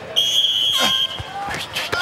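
Electronic start buzzer sounding one steady high-pitched tone for about a second at the end of a countdown, signalling the start of a timed round.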